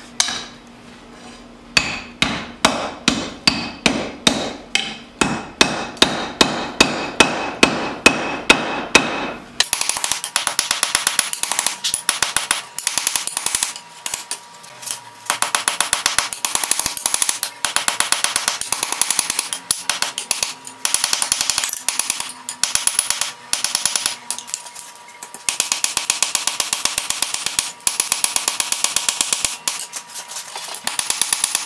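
Hand hammer striking a hot steel blade blank on an anvil, each blow ringing. For the first several seconds the blows are louder and come about two a second. After that comes a long run of quicker, lighter blows with a few short pauses.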